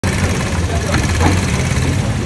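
A motor vehicle engine idling close by: a steady low hum with even pulsing, and faint voices in the background.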